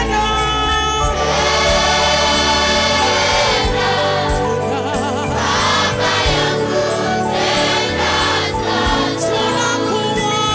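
Gospel choir singing worship music.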